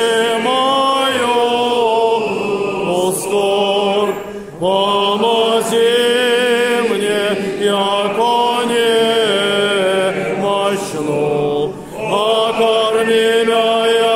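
A group of voices, mostly men's, singing Russian Orthodox chant to the Mother of God a cappella: long, held phrases with two short breaks for breath, about four and a half and twelve seconds in.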